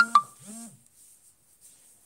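Two sharp taps with a brief ringing tone, right at the start, followed by a short low vocal murmur. For the last second or so there is only quiet room tone.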